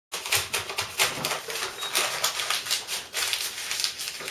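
Heavy brown kraft paper being handled, rolled and scrunched, rustling and crinkling in a quick, irregular run of crisp crackles.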